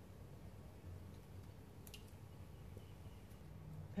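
A quiet room with one small click about halfway through, as a paintbrush digs hardened acrylic paint out of its container.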